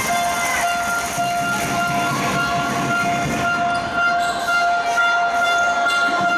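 A long, steady horn-like tone held without a break, over the general noise of a basketball game in a gym.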